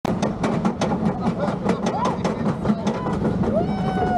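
Steel family roller coaster train running on its track: a steady rumble with rapid clacking, about five clicks a second. Near the end a rider lets out a long, falling 'whoa'.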